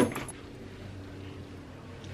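Quiet room with a faint steady low hum and nothing else distinct.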